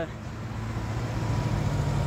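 Low hum of a road vehicle's engine, growing gradually louder.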